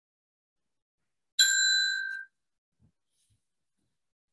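A single bright bell-like ding about a second and a half in, a high chime with a few ringing tones that fades out within about a second.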